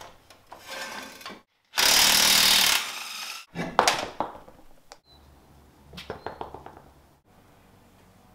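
Pneumatic impact wrench running in one burst of about a second on the wheel's lug nuts, followed by a sharp knock as the wheel is handled and a few light metal clicks.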